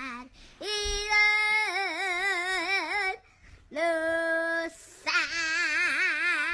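A young girl singing unaccompanied in a gospel quartet style. She holds long notes with a wide, wavering vibrato, in three phrases with short breaks between them.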